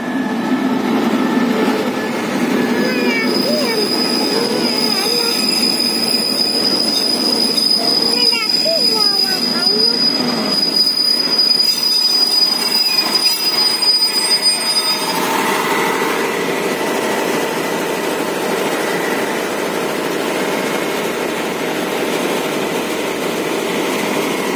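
Passenger train hauled by an SRT CDA5B1 ('Ultraman') diesel-electric locomotive rolling into the station and past, coaches clattering by. A steady high-pitched squeal from the train runs from about three seconds in until about fifteen seconds in, then stops, leaving the rumble of the train.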